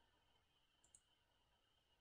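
Near silence, with one faint, brief click about a second in.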